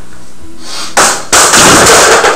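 A metal folding chair crashing down onto a tiled floor: a loud hit about a second in, then a second, longer crash and clatter as it lands and skids, over quiet background music.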